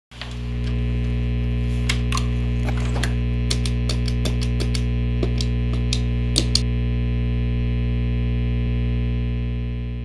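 A steady, distorted electric guitar drone held through effects pedals, with irregular sharp clicks over it during the first six or so seconds; it fades out near the end.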